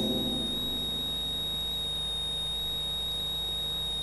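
Steady high-pitched electrical whine over a low mains hum: noise in the sound system or recording.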